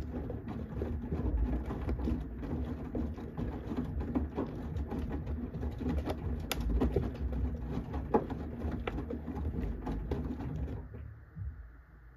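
Samsung front-loading washing machine tumbling a wet load during the wash, with water sloshing and wet clothes slapping and splashing over a low drum and motor rumble. The tumbling stops about eleven seconds in as the drum comes to rest, leaving only the low rumble.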